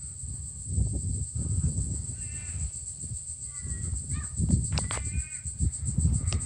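A crow cawing three times, about a second and a half apart, over a steady high insect drone, with low rumble on the microphone.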